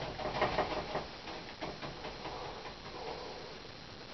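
Bristle paintbrush tapping paint onto a canvas: a quick run of dabs for about the first second, then fainter, sparser taps.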